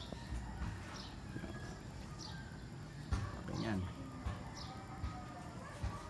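Outdoor background of short, high, falling bird chirps repeated about once a second, over faint voices and a few low thumps.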